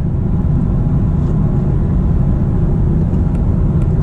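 Steady low road and tyre rumble with engine hum inside the cabin of a BMW M340i xDrive cruising at highway speed.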